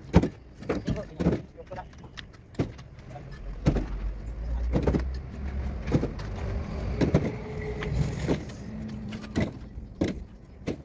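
A steel bricklaying trowel knocking and scraping on red clay bricks as they are set in mortar, with sharp, irregular knocks about once a second. A low rumble swells in the background around the middle.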